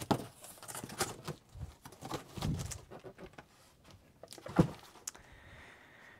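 Cardboard shipping box and boxed model kits being handled: scattered rustling and knocks, with a dull thump about two and a half seconds in and a sharp knock a couple of seconds later.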